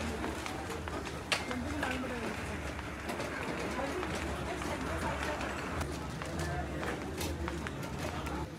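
Background chatter of shoppers in a busy store over a low steady hum, with a sharp click about a second in and another near the end.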